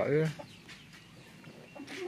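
A woman's voice ends just after the start, followed by faint chicken clucking in the background.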